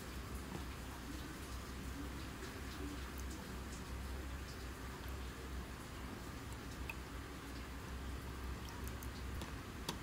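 Quiet room tone with a steady low hum and a few faint ticks; the slow pour of milk into the cup is not clearly heard.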